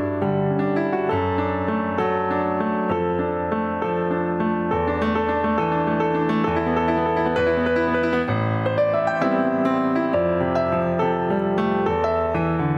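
Korg Kronos workstation keyboard played solo with a piano sound: sustained chords over a bass note that moves every couple of seconds.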